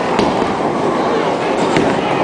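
Bowling alley din: a bowling ball rolling down the lane over a steady background of voices, with a sharp knock just after the start and another near the end.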